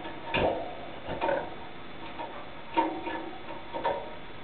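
Caged European goldfinch making a few short, clicky chirps about a second apart, the first the loudest.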